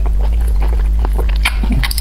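Close-miked chewing of conch meat: a run of short, wet mouth clicks and smacks over a steady low hum, with a brief hummed "mm" near the end.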